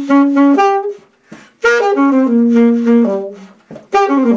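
Alto saxophone playing a solo jazz line: a run of quick notes, a short pause about a second in, then a longer phrase with held notes.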